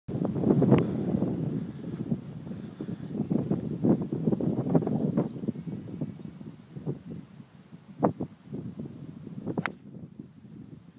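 Low, uneven rumbling noise on the microphone, loudest in the first seconds. Near the end comes a single sharp crack as a golf driver strikes the ball off the tee.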